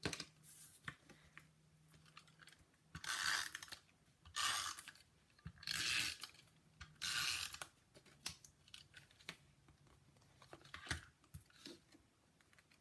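An adhesive tape runner pulled across the back of a paper card panel in four quick strokes, each a short rasping rip a little over a second apart. It ends with a few light clicks and taps as the panel is handled and pressed down.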